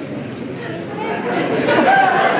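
Chatter of many people talking at once in a large hall, growing louder about a second in.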